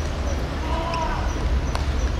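Football players' distant shouts over a steady low rumble, with one sharp knock near the end.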